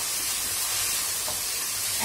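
Sliced onions and ginger-garlic paste sizzling steadily in hot oil in a nonstick kadhai while being stirred with a wooden spatula, frying over a lowered flame toward golden brown.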